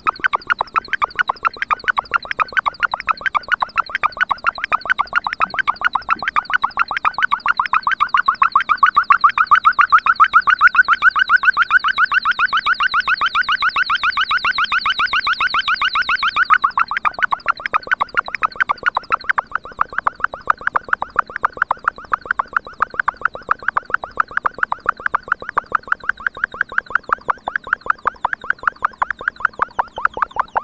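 MFOS Noise Toaster, a DIY analog synthesizer, putting out a fast, even train of pulsing electronic bleeps as its knobs are tweaked. About a third of the way in the pulses grow louder and brighter, then drop back to a thinner, duller pulse a little past halfway.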